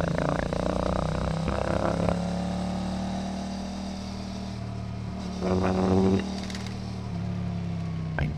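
Motorcycle engine sound from a ride, passed through AI speech enhancement: the engine's steady note comes out as a low hum with warbling, voice-like sounds over it. The note rises in the first two seconds as the engine revs, and a burst of the voice-like warble comes about five and a half seconds in.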